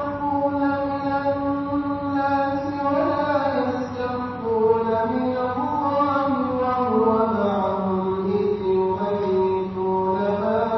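A man reciting verses of Surah An-Nisa in Arabic in melodic Quranic chant (tajwid). He holds long drawn-out notes that slide slowly in pitch and sink lower in the second half.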